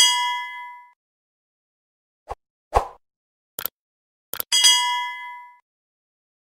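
Sound-effect chime: a few short clicks, then a bright bell-like ding that rings and fades over about a second. The pattern comes twice, at the start and again about four and a half seconds in.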